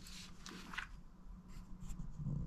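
Faint soft rustling and handling noise over a low steady hum.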